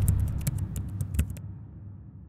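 Logo sting sound effect: a deep low boom fading out, overlaid with a quick run of keyboard-typing clicks that stop about one and a half seconds in.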